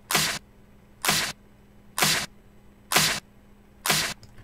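A sampled drum hit looped in Ableton Live, sounding five times at an even pace of about once a second, each a short noisy crack, played through Ableton's Compressor on a soft-knee setting.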